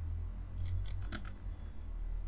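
Computer keyboard typing: a short quick run of about five or six key clicks.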